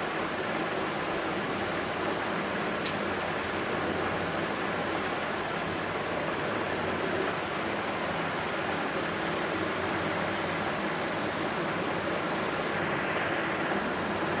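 Steady hiss of background noise with no change in level, broken once by a short faint click about three seconds in.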